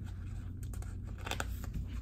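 A paper sticker being peeled off its backing sheet in a sticker book: a few short scratches and crackles, the clearest just over a second in, over a steady low hum.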